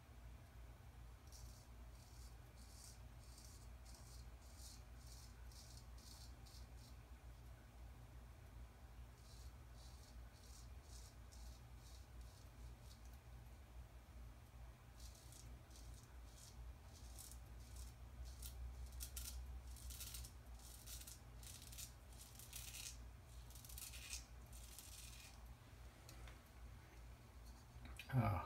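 Straight razor scraping through lathered beard stubble in quick short strokes, faint, coming in runs with brief pauses between. A steady low hum lies underneath.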